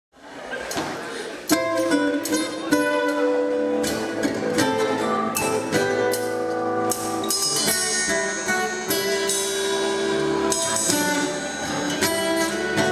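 Live country band opening a song: acoustic and electric guitars, bass, drums, keyboards and steel guitar. It fades up from silence and the full band comes in about one and a half seconds in, then plays on steadily with a regular drumbeat.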